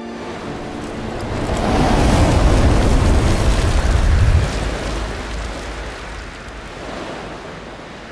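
A sound effect for an animated logo reveal: a deep, rushing rumble that builds over the first two seconds and holds loud. About four and a half seconds in it drops back, then fades away slowly.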